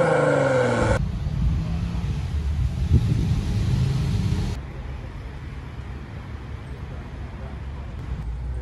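A car engine idling: a steady low rumble, with a sudden drop in level and treble about four and a half seconds in.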